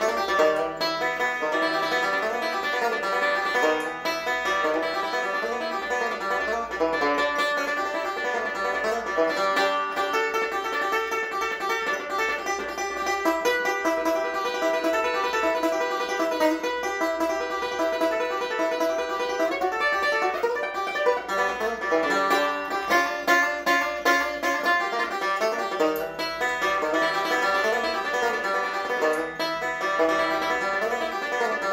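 Banjo played solo: a continuous stream of fast fingerpicked notes.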